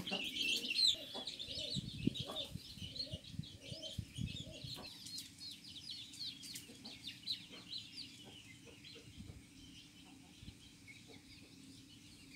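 Chicks peeping continuously in many short high chirps, with a hen's low clucks mostly in the first half; the sound grows fainter toward the end.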